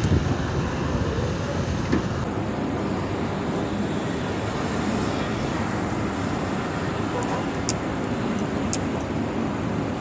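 Strong wind rushing over the microphone in a steady roar, with two faint ticks near the end.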